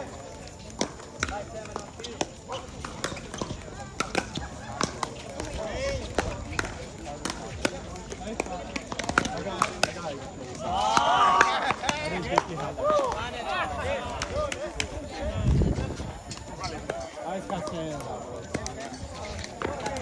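Pickleball rally: repeated sharp pops of paddles striking the plastic ball, over background chatter, with a loud voice about eleven seconds in.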